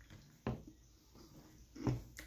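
A single short knock about half a second in, followed by a fainter tap and a brief soft sound near the end, in an otherwise quiet room.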